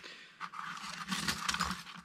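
Hands lifting a bundle of metal lock picks out of a zippered fabric pick case on a wooden bench, a rustling scrape that starts about half a second in.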